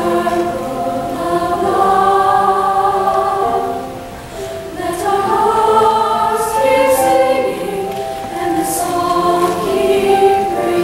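Large mixed choir of male and female voices singing in harmony, holding long notes. There is a brief dip between phrases about four seconds in.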